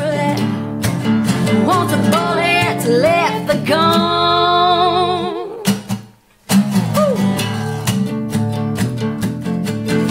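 Live acoustic country song: strummed acoustic guitars under a woman singing, her voice climbing into a long held note with vibrato. Then all of it stops dead for about half a second before the guitars and voice come back in.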